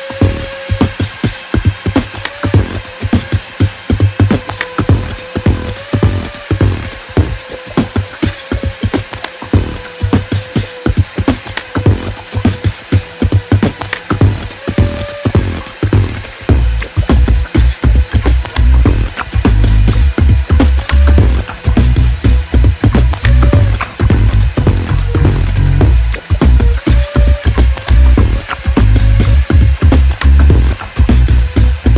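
Corded rotary tool running with a steady whine that sags and wavers in pitch each time the micarta piece is pressed against its sanding bit to sand around a drilled hole. Background music with a fast beat plays over it, with heavy bass coming in about halfway.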